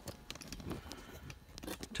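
Faint scattered clicks and short rustles of handling, with no steady sound.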